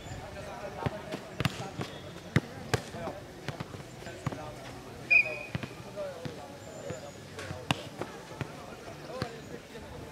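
A futnet ball being kicked and bouncing on a clay court during a rally: a run of sharp, irregular thuds, the loudest about five seconds in.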